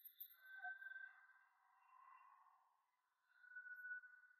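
Near silence, with a few faint held tones.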